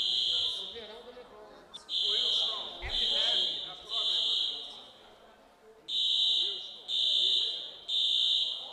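Fire alarm beeping in a three-beep pattern: high beeps about a second apart, a pause of about a second, then three more.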